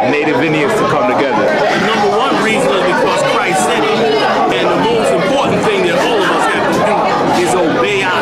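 Several voices talking over one another: steady overlapping chatter with no single clear speaker.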